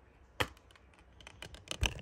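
Plastic clicks from a Blu-ray case being handled and opened: one sharp click about half a second in, then a quick run of clicks near the end, the last the loudest.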